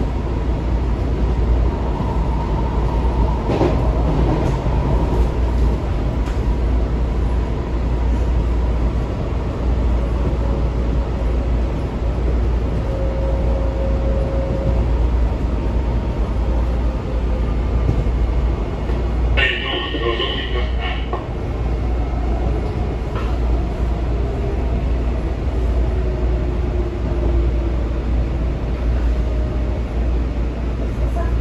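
Washington Metro railcar running between stations, heard from inside the car: a steady low rumble of wheels on rail, with faint whining tones that slowly shift in pitch. About twenty seconds in, a brief high-pitched ringing sound lasts about a second and a half.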